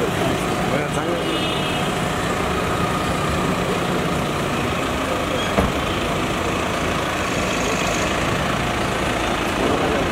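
A car engine idling with a steady hum, and a single sharp thump a little past halfway through.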